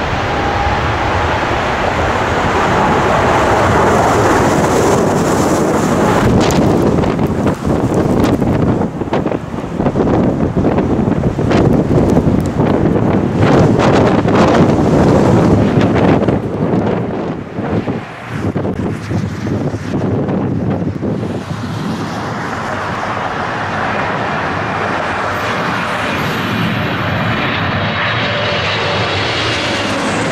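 Boeing 777's GE90 engines at takeoff thrust: a loud jet rush that builds as the aircraft rolls away. Through the middle the jet blast buffets the microphone in gusts. Later a steadier jet noise with a falling whine takes over.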